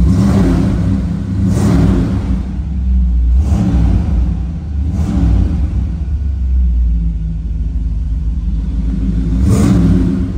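A 350 cubic-inch small-block Chevy crate V8 with a Holley 600 CFM carburetor, idling and revved in about five short throttle blips: near the start, at about 1.5, 3.5 and 5 seconds, and near the end.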